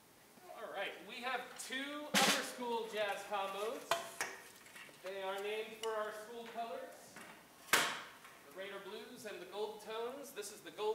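Indistinct talking that is not picked up clearly, with two sharp knocks, one about two seconds in and one near the eighth second.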